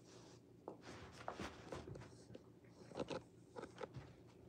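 A Rottweiler crunching and chewing a hard dog treat: a faint, irregular run of crisp crunches, loudest about three seconds in.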